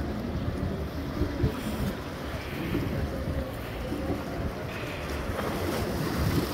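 Wind buffeting the phone's microphone in uneven gusts, over the wash of small sea waves against the rocks.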